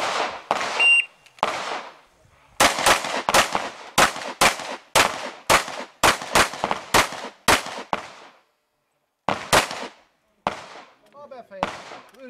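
Heckler & Koch P2000 pistol fired in a fast string of double taps, about twenty shots in quick pairs, after a short electronic shot-timer start beep. A pause of about two seconds follows, then a few more single shots near the end.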